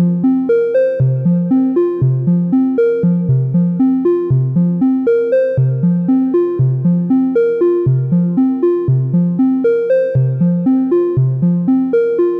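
Software modular synth patch in VCV Rack playing a sequenced synth voice from a Path Set Glass Pane sequencer. The notes are short and step up and down in pitch, about four a second, over a recurring low note.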